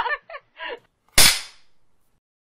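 A single sharp clap of a film clapperboard about a second in, dying away quickly.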